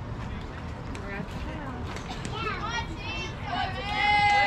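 Girls' high-pitched voices calling out and cheering in drawn-out, rising and falling shouts, beginning about halfway through and getting louder at the end, over a steady low outdoor rumble.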